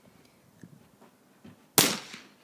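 A single rifle shot about three quarters of the way through: one sharp crack with a brief echo trailing after it.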